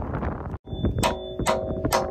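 Steel hammer striking a steel pin three times, about half a second apart, each blow a sharp ringing clang. The blows drive the retaining pin that locks a new tooth onto an excavator bucket adapter. Before the blows there is a short stretch of low rumbling noise.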